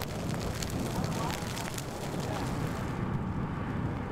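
Burning prairie grass crackling over a steady low wind rumble. About three seconds in the crackling drops away, leaving only the low rumble.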